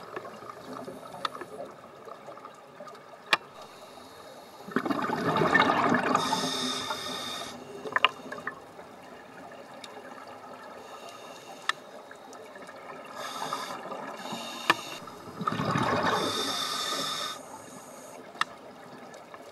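Scuba diver's regulator breathing heard underwater: two long bubbling exhalations about ten seconds apart, with a fainter hiss of an inhalation between them. Scattered single sharp clicks.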